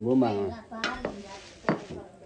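A brief spoken word at the start, then two sharp clinks of tableware: one just under a second in, one near the end.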